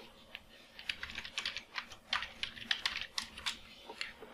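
Typing on a computer keyboard: a quick, irregular run of key clicks that starts sparsely and grows dense from about a second in, stopping shortly before the end.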